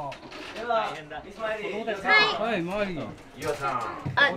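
Several people's voices in a small room: indistinct talk and exclamations, with a high wavering voice about two seconds in.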